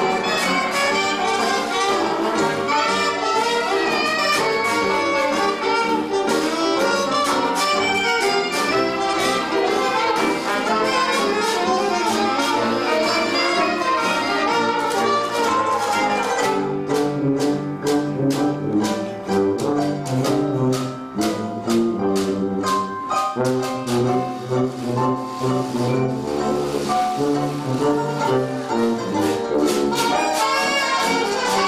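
Traditional 1920s-style hot jazz band playing live: trumpet, saxophone and trombone over banjo, piano, drums and sousaphone bass. About halfway through, the full ensemble thins to a lighter passage over a steady beat and a prominent low sousaphone line.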